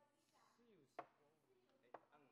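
Near silence, broken by two faint sharp clicks, one about a second in and one near the end.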